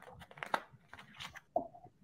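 Faint scattered clicks and light rustling in a quiet room, with one brief short sound about a second and a half in.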